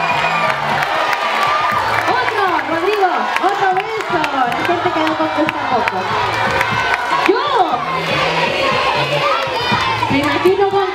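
A crowd of children cheering and shouting, many voices overlapping.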